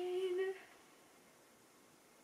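A woman's long hum held on one slightly rising note, trailing off about half a second in.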